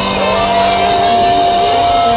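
Live funk band playing, with one long held high note over the band.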